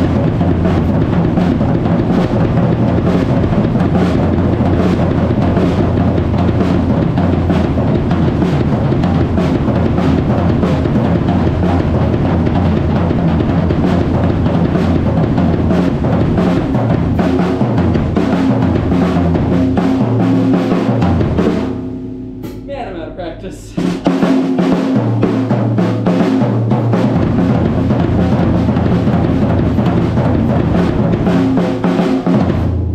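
A drum kit pieced together from mismatched parts, played continuously and hard with snare, toms, kick and cymbals. Just after twenty seconds in, the playing drops away for about two seconds, leaving a low ring, then comes back in full.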